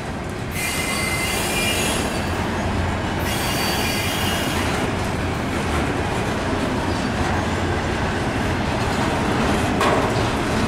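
Double-stack intermodal well cars rolling past on steel rails, a steady rumble of wheels on track. High-pitched wheel squeal rises over it for the first four seconds or so.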